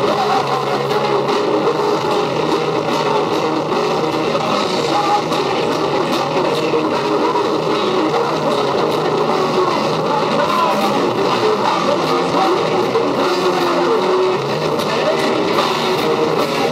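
Live heavy metal band playing loud: electric guitar, bass guitar and drums together in a steady, dense wall of sound.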